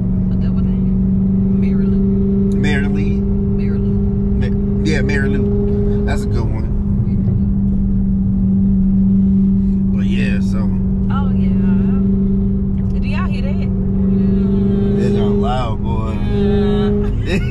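Dodge Hellcat's supercharged 6.2-litre V8 and road noise at a steady cruise, heard from inside the cabin as one even, unchanging hum.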